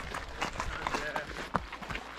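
Footsteps of trail runners on a gravel path as they run past, an uneven patter of steps.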